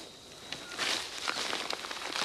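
Newspaper rustling and crackling as it is spread by hand over plants and dry straw mulch, starting about half a second in.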